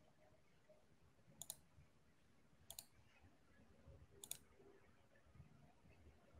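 Near silence broken by three faint, sharp clicks, spaced about a second and a half apart.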